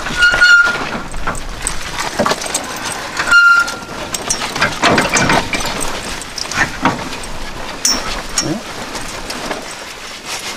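Steel tow-bar coupler being worked onto a hitch ball, metal clanking and scraping, with scattered knocks. Two short ringing metallic squeals come about half a second and three and a half seconds in.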